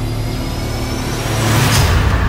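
Trailer sound design: a deep, steady drone of several held low tones, with a rising whoosh swelling toward the end.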